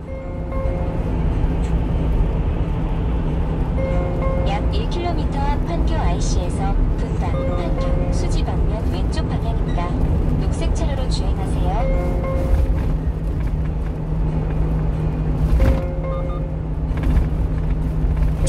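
Steady low rumble of road and engine noise inside a one-ton truck's cab while it drives on an expressway. Music with voices plays in the cab over it.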